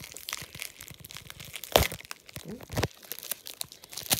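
Bubble wrap and packing paper crinkling and crackling as wrapped items are handled in a cardboard box, with a sharp crack a little under two seconds in.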